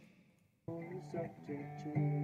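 Acoustic guitar with a singing voice, a few held notes that change pitch a couple of times, starting about two-thirds of a second in after a short near-silence.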